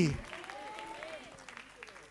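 A man's word ends from a microphone in the first moment, then a congregation applauds faintly, with a few scattered voices calling out softly.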